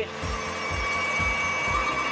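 Hiab X-HiPro 232 knuckle boom crane's hydraulic system running as the boom folds: a steady whine, with a low pulse about four times a second underneath.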